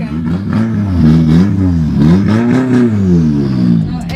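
A car engine being revved hard in free rev, its pitch climbing and dropping back about three times in quick succession; loud.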